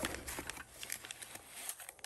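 Clear plastic parts bag crinkling as hands dig through it, with light clicks from the small screws and keys inside: a quick run of crackles that thins out toward the end.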